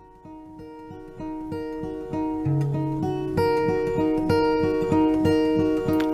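Acoustic guitar playing a song's instrumental intro, notes picked on an even beat, fading in and getting steadily louder.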